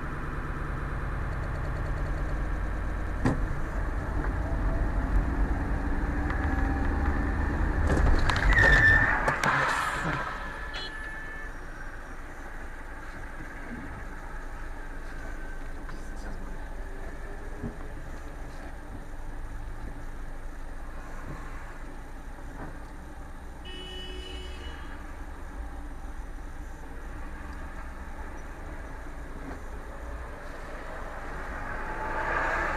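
Car engine and traffic noise heard from inside the cabin: a steady low rumble while moving, loudest in a noisy burst about nine seconds in, then dropping to a quieter steady idle as the car stands still.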